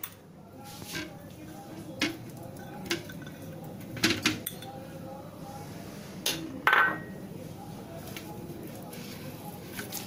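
Crockery and bowls being moved and set down on a kitchen countertop: a handful of separate knocks and clinks, the loudest about two-thirds of the way in with a brief ring.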